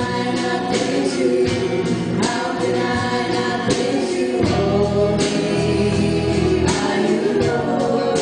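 Live church worship music: a praise song sung by worship leaders and congregation together, over a band with electric guitar and drums.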